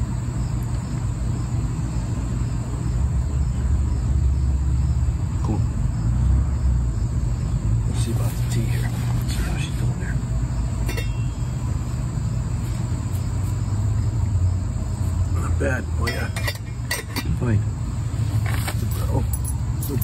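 A steady low rumble throughout, with a few scattered short clinks of a metal spoon against a metal canteen cup, mostly in the middle and in the last few seconds.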